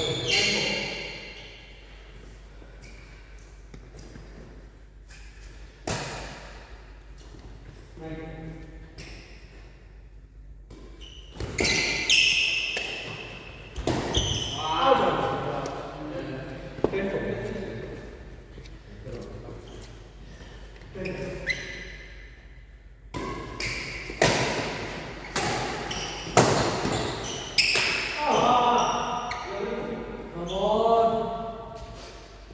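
Badminton rackets striking a shuttlecock, sharp smacks that echo around a large hall, few during a lull in the first several seconds and more often after that, with players' voices calling out between shots.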